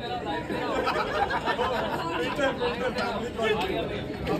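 Several people talking over one another: overlapping group chatter with no single clear voice.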